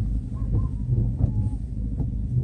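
Steady low rumble with a few faint, short chirps that sound like birds.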